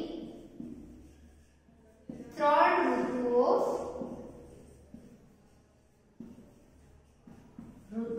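A woman speaking for a couple of seconds, starting about two seconds in, then a quieter stretch with a few faint taps of a marker writing on a whiteboard.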